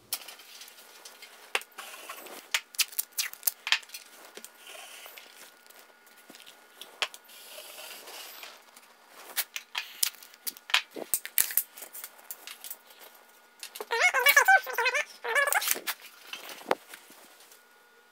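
Scattered small clicks, taps and rustling as hand tools are handled: a stud finder and strips of painter's tape. A brief stretch of muffled, wordless voice comes about fourteen seconds in.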